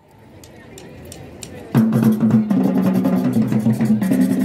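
Faint crowd voices fading in, then a marching band starts playing about two seconds in: drums with a sustained brass chord.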